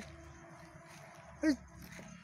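One short, high yelp that falls quickly in pitch, about a second and a half in, in an otherwise quiet stretch.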